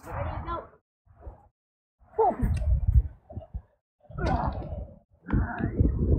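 Short bursts of indistinct, muffled talking, broken by several moments of complete silence.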